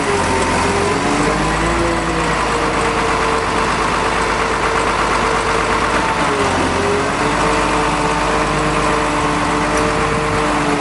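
Engine of the crane working over the lock, running steadily under load. Its pitch dips and recovers twice, once about a second in and again near two-thirds of the way through.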